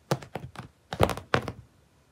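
A cat's paws thumping and patting on carpet as it pounces and swats at a laser dot: a quick, uneven run of about six knocks, then nothing after about a second and a half.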